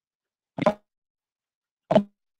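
Two brief blips of garbled sound, just over a second apart, with dead silence between them: the audio of an online video call breaking up. The host puts this down to the call trying to play the shared video's soundtrack.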